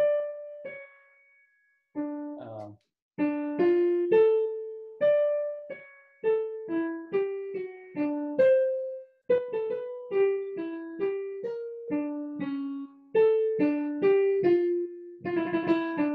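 Digital piano playing a single-line melody, one note at a time: two isolated notes with pauses, then from about three seconds in a steady run of quick notes, the tune being picked out from memory.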